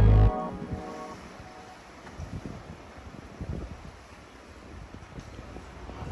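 Background music cuts off right at the start, leaving a low, uneven rumble of wind gusting against the microphone.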